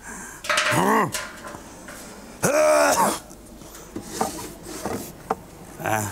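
A voice making two drawn-out wordless sounds that rise and fall in pitch, then a few light wooden knocks and clacks as wooden dowels are pulled from a store shelf.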